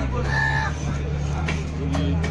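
A large knife chopping through fish on a wooden block, with a couple of sharp knocks in the second half, over a steady low mechanical hum. A short high-pitched call sounds about half a second in.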